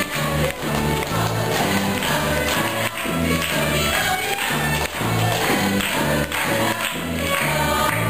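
Lively Irish folk dance tune played live on fiddles over a steady bass beat of about two notes a second, with a chorus of voices singing along.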